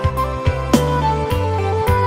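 Instrumental passage of a Minang pop song, with no singing: a sustained melody line stepping between notes over steady bass notes, punctuated by sharp drum hits.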